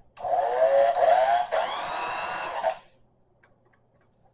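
Electric hand mixer beating mashed potatoes: its motor runs for about two and a half seconds with a whine that wavers in pitch as the beaters work through the potatoes, then stops.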